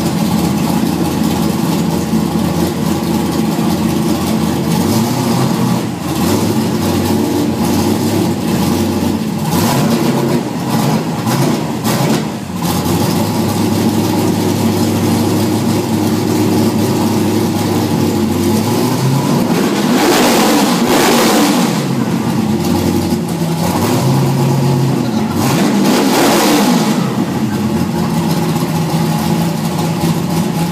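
1200 hp Volvo 240 drag car's engine idling loudly and unevenly, revved twice in the second half, each rev sweeping up and dropping back to idle.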